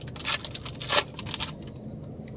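Wrapper of a Topps Chrome baseball card rack pack being torn open: a few short rips and rustles, the sharpest about a second in.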